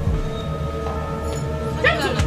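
Background music of sustained synth notes over deep bass hits that drop in pitch. Near the end a short, high-pitched cry with a bending pitch begins.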